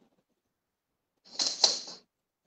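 Silence, then about a second in a brief clatter of roughly half a second with one sharp click in its middle: training sticks knocking together during a fast partner drill.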